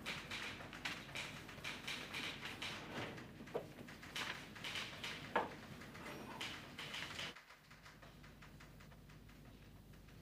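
A rapid, irregular clatter of small clicks and knocks with two brief squeaks. It cuts off suddenly about seven seconds in, leaving only a faint steady hum.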